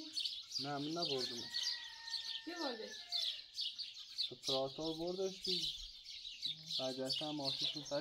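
Many small birds chirping nonstop, a steady high twittering chorus, with people's voices talking in short spells over it.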